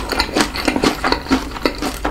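Close-miked chewing of Cheetos-crusted fried chicken: a quick, irregular run of crisp crunches.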